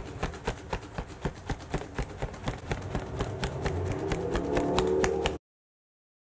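A hand fan waved quickly in front of the face, flapping in a steady rhythm of about four strokes a second; the sound cuts off suddenly near the end.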